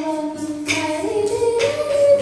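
A young girl singing a melody into a microphone, accompanied by acoustic guitar.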